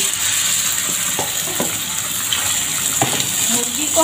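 Raw chicken pieces sizzling steadily in hot oil with fried garlic in a wok as they are added, with a few light knocks along the way.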